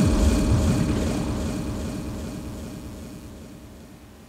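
Closing sound of a live electronic trip hop improvisation: a low, rumbling electronic texture with a fast flutter, fading out steadily as the piece ends.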